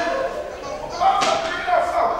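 Actors' voices on a stage, with a single sharp thump about a second in.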